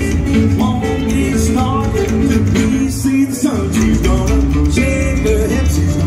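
Live rockabilly band playing a passage without vocals: hollow-body electric guitars over upright bass and drums. The bass end drops out briefly about three and a half seconds in, then the full band comes back in.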